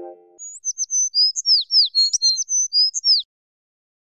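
A bird chirping: a quick run of about a dozen high, mostly downward-sweeping chirps, about four or five a second, for nearly three seconds, then stopping abruptly. It comes in just as the last ringing chord of a music sting dies away.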